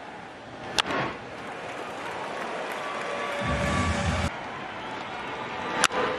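Ballpark crowd noise, with a sharp pop about a second in as a pitch is delivered and the crack of a bat meeting a ground ball near the end. A brief low organ-like tone sounds in the middle.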